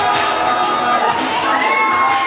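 Crowd cheering and shouting, high voices among them, over music, with one voice calling out in a long raised note near the end.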